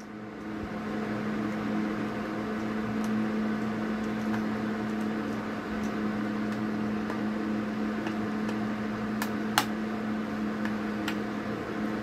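A steady mechanical hum from a running motor, with two sharp clicks about nine seconds in.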